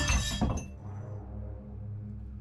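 A piece of glass falling onto a floor and shattering: a sharp crash, a smaller second clink about half a second later, and high tinkling that dies away within about a second.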